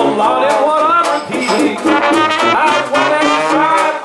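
Traditional New Orleans-style jazz band playing at a swing tempo: trumpet and trombone phrases over banjo, tuba and washboard keeping a steady beat, between the sung lines.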